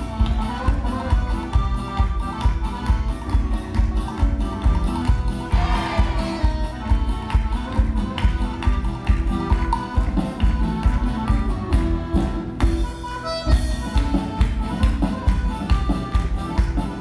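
Lively folk dance music with a steady, driving beat, with the dancers' feet stamping on the wooden stage in time with it.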